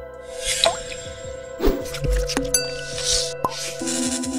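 Electronic intro music with whoosh sound effects over a sustained synth tone. A deep bass hit lands about two seconds in.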